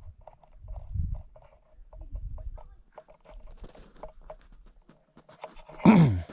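Footsteps crunching on packed snow, about three steps a second through the second half. Earlier there are two low rumbles of wind buffeting the microphone. Near the end a loud, brief sound slides sharply down in pitch.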